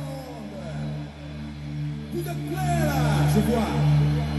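Music playing from a Panasonic DT505 boombox, with steady bass notes and sliding higher notes that get louder about halfway through.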